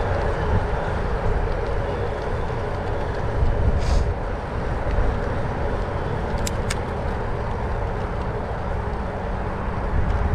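Steady rumbling wind on a chest-mounted action camera's microphone and tyre noise from a 2022 Trek DualSport 2 hybrid bicycle rolling along. There is a short sharp click about four seconds in and two more close together a few seconds later.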